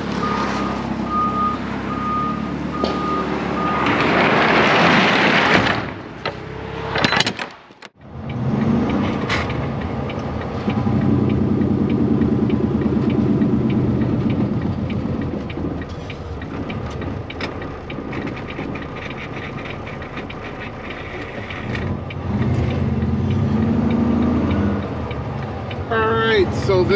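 A forklift's reversing alarm beeping steadily, joined by a loud rushing hiss that dies away. After a cut, a tractor-trailer's diesel engine running steadily under way, heard from inside the cab, its pitch rising near the end.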